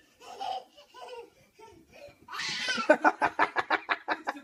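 People laughing: short vocal bursts at first, then a fast run of laughing pulses from about halfway through.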